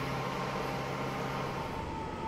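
A steady mechanical hum over an even rushing noise. The low hum stops near the end, and a single higher steady tone starts just before the end.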